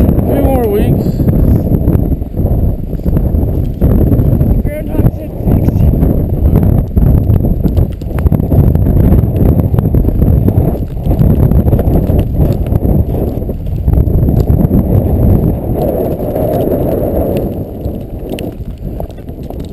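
Strong wind buffeting the microphone: a loud low rumble that swells and drops in gusts, with footsteps in snow underneath.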